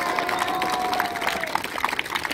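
A group of people clapping, with dense rapid claps throughout, and one voice holding a long call over it that ends about one and a half seconds in.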